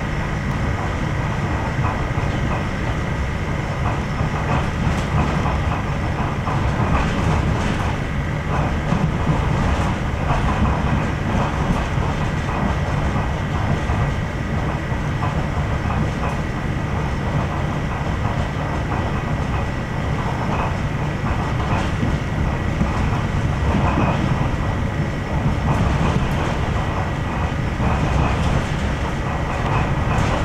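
Ride noise of a Renfe Cercanías electric commuter train under way, heard from inside the carriage: a steady rumble of wheels on track, with a thin constant high tone and occasional faint clicks.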